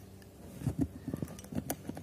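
Plastic thumbwheel dials of a three-digit luggage combination lock being rolled one notch at a time, giving a quick run of small clicks that begins about half a second in. Each dial is being stepped back one number to try the next combination.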